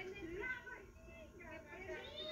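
Indistinct talking voices, played back from an old home video on a television screen.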